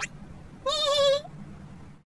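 A quick rising swish, then a high-pitched cartoon character's voice holding one short wavering note, like a cheery squeal of greeting.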